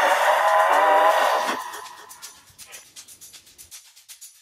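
A loud dramatic music sting with a wavering, warbling tone, typical of a film soundtrack. It holds for about a second and a half, then dies away into faint scattered crackles.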